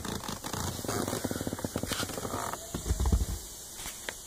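Scratchy rustling and scraping of a smartphone being handled and moved close to its microphone, with a short low rumble about three seconds in.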